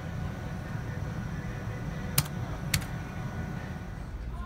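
Steady low hum of casino room noise, with two sharp clicks about half a second apart a little past halfway, the first the louder: buttons being pressed on a video poker machine.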